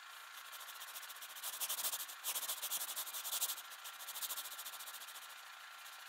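Scratching of a seismograph pen drawing a trace across paper, a fast, fine rasp that grows louder in the middle and dips briefly a little over two seconds in.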